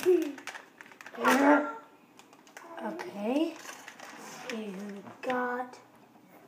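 A child's voice making short, wordless exclamations that slide up and down in pitch, the last one held briefly near the end, over light crinkling and clicking as a foil Lego minifigure blind-bag is handled.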